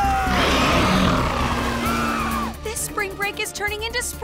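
Cartoon soundtrack: loud background music with sound effects and a falling vocal cry, which gives way after about two and a half seconds to a quieter passage of music and voice.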